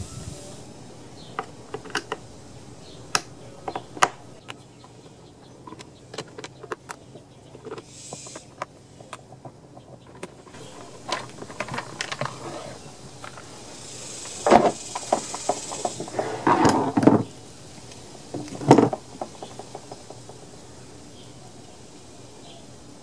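Scattered light clicks and a few louder knocks of a plastic chainsaw housing being handled as its top cover and foam air filter are taken off, the loudest knocks coming in the second half.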